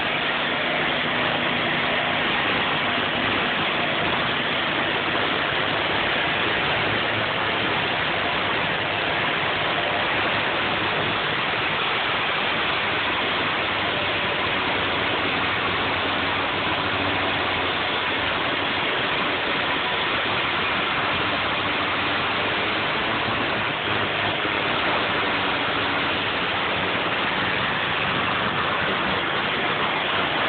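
Angle grinder with an abrasive cut-off disc grinding through steel rebar set in a concrete parking wheel stop, a steady unbroken rushing noise throughout.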